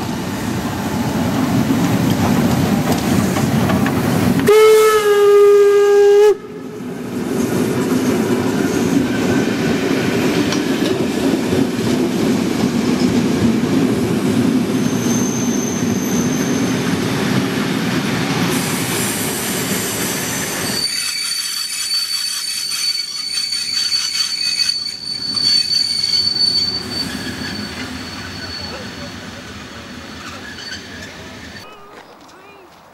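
Steam locomotive working a passenger train past at close range, with a loud steady whistle blast about five seconds in that cuts off abruptly. The coaches then rumble by, and a thin high squeal from the wheels holds for several seconds as the train draws away and the sound fades.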